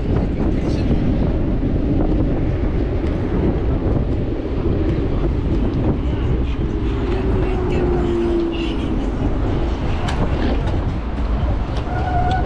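Steady wind rushing over the camera microphone while riding along the road, with low road rumble. A faint hum that dips slightly in pitch comes through from about six to nine seconds in.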